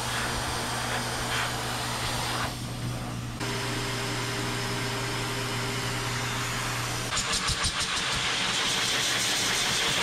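Hose-type high-velocity pet dryer blowing air through a dog's thick coat: a steady motor hum under a rushing hiss of air. The hiss drops briefly about three seconds in. After about seven seconds the airflow gets louder and flutters rapidly for a moment before steadying.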